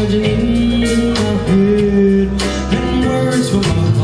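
Live funk-blues band playing, a guitar carrying held, bending notes over bass and drums with regular cymbal strokes.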